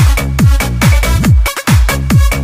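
Electronic dance remix music with a pounding kick drum on every beat, about two beats a second, and a brief drop in the bass about one and a half seconds in.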